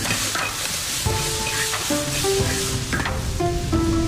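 Greens sizzling in a large wok while a ladle stirs and scrapes through them, with background music playing a melody.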